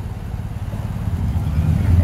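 Street traffic passing, with a vehicle's low engine rumble building over the second half.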